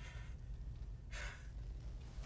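A man breathing hard after a struggle: two heavy, noisy breaths about a second apart, over a low steady hum.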